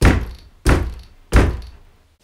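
Three loud knocks on a panelled interior door, evenly spaced about two-thirds of a second apart.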